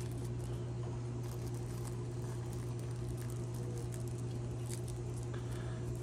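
Faint rustling and small ticks of rolling paper and a paper filter tip being worked between fingers, over a steady low hum.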